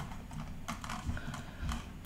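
Faint, irregular clicks from computer use at a desk, several small taps in the second half.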